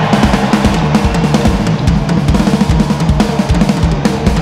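Loud rock music driven by a fast drum kit beat of bass drum, snare and cymbals over sustained guitar and bass.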